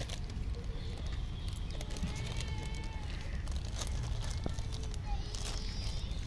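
Outdoor ambience: a steady low rumble of wind on the microphone, with faint distant voices and a few light rustles and clicks.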